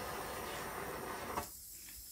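Steady hiss of a handheld gas torch flame playing over wet acrylic paint to pop surface bubbles, cutting off abruptly about a second and a half in. The torch is behaving oddly, and its user thinks it may need more gas.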